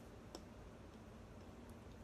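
Near silence: room tone with two faint short clicks, one early and one near the end.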